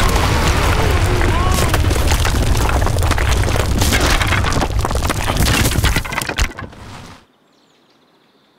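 Cartoon sound effect of a built-up mound of earth collapsing. A loud rumble with dense crackling and crashing dies away about seven seconds in.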